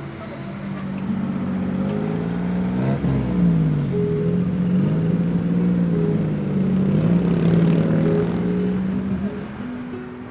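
Road traffic at a busy junction: motor vehicle engines running and passing close, growing louder through the middle. About three seconds in, one engine's pitch drops and rises again as it goes by.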